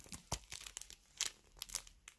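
Clear plastic packaging of nail decal sheets crinkling as it is handled: a scatter of short, faint crackles and clicks.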